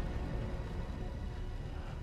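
A low, steady, dark film score, mostly deep bass with no speech over it, building tension.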